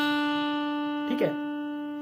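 Indian banjo (bulbul tarang): a single note plucked upward on the main string with a pick, ringing with a long, slowly fading sustain.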